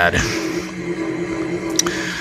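A steady background hum with several held tones fills a pause in a man's speech, with a short click near the end.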